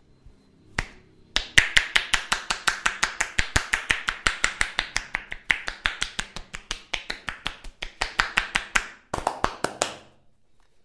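Rapid percussive massage strokes: the barber's hands striking the client's bare upper back and shoulders in quick, even chops, about six sharp slaps a second. There is one lone strike about a second in, then a steady run that breaks off briefly near the end and starts again.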